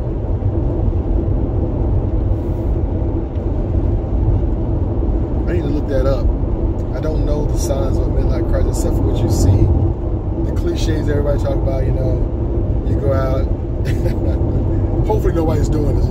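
Steady low road and engine rumble inside a moving car's cabin, with a man's voice coming in at intervals in the second half.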